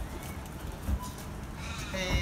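Footsteps on a concrete footpath over a low outdoor rumble, with one louder thump about halfway through.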